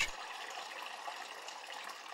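Liquid pouring in a steady, even rush: colostrum being poured.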